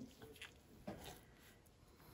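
Near silence, with two faint, brief handling noises as a small paint-covered panel is tilted in gloved hands.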